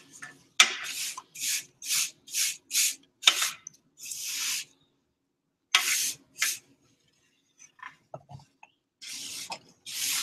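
Scraping strokes on an enamel tray as liquid watercolor paint is scraped off it into a small jar: a quick run of about two short scrapes a second, then a few longer, spaced-out scrapes.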